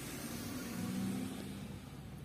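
Car cabin noise: a steady low drone with a hiss of air. The drone fades out shortly before the end.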